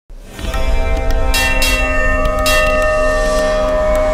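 Bells ringing in a channel intro sting, starting suddenly and holding many long ringing tones over a deep low hum. Bright fresh strikes come about a second and a half in and again about two and a half seconds in.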